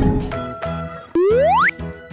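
Children's background music with a cartoon sound effect about a second in: one rising glide in pitch, like a slide whistle, lasting about half a second. It opens on the fading tail of a swish.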